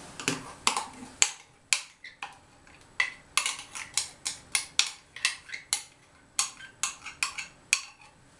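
A spoon knocking and scraping inside a metal mug as thick sour cream is emptied into a bowl: a quick run of sharp metallic clinks, about three or four a second for most of the second half.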